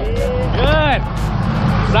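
A person's voice calls out once, briefly, over a steady low rumble.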